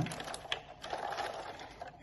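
Water and lichen pieces sloshing in a plastic cup as it is swirled on a stone countertop, with small irregular scrapes and ticks from the cup's base on the counter.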